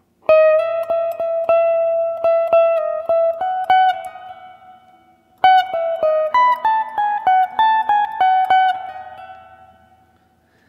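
Electric guitar playing a single-note lead phrase slowly. The first part is a note picked over and over with a small slide into it. About five seconds in comes a quicker run of higher notes that moves between neighbouring frets and then rings out.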